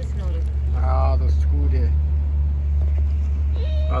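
Steady low rumble throughout, with short voices over it: a brief high-pitched vocal sound about a second in, and a falling spoken phrase at the very end.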